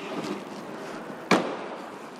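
The side-hinged rear door of a Toyota Land Cruiser Prado 120, carrying its spare wheel, swung shut with a single slam about a second and a half in.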